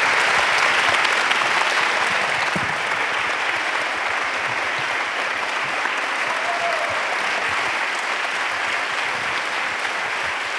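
Audience applauding, a dense, steady clapping that eases off slightly toward the end.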